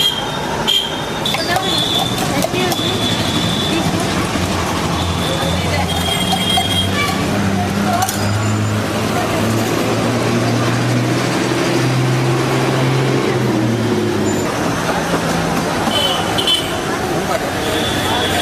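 Busy street din of motor traffic, with short horn toots and voices over it. An engine drone grows and climbs in pitch midway as a vehicle runs close by.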